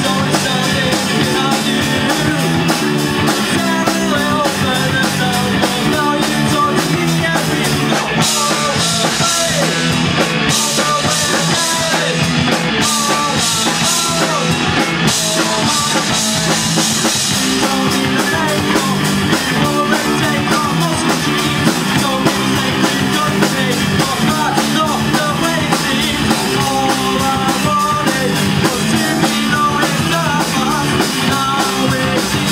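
Rock band playing live: electric guitars over a drum kit, with a brighter cymbal wash from about 8 to 15 seconds in.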